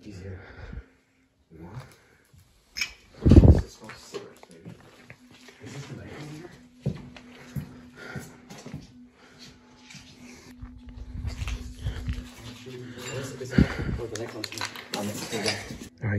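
Muffled low voices and movement noise, with one loud thump about three seconds in and a faint steady hum underneath.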